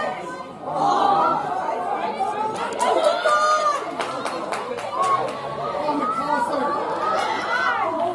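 Many voices shouting and calling over one another on a rugby pitch during open play, with a couple of sharp knocks about three seconds in.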